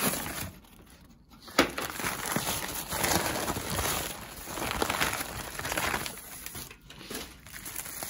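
Crumpled paper packing rustling and crinkling as it is pulled out of a cardboard box and opened out by hand, with a sharp crackle about a second and a half in.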